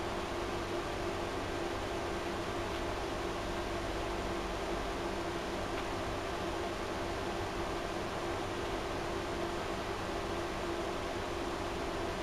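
Steady background hiss with a faint constant hum and no distinct sounds: room tone or recording noise.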